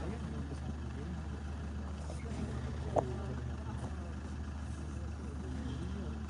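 Car engine idling steadily, a low even hum, under faint murmuring voices. A single short click about three seconds in.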